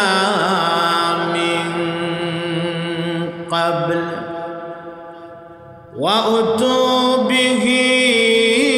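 A man chanting in long, drawn-out melodic notes. One note is held for about three and a half seconds, a second fades away, and a new loud phrase begins about six seconds in.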